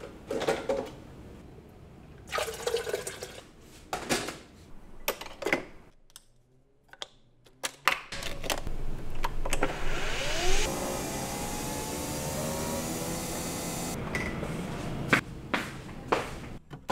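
Kitchen handling clicks and knocks, then water running into a vessel for about four seconds, its pitch rising as the vessel fills.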